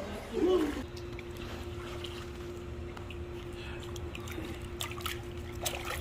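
Water lapping and dripping in a small backyard pool as children move about in it, with a short child's voice in the first second and a steady low hum underneath.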